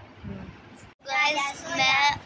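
A young girl singing close to the microphone, starting about a second in after a short quiet stretch.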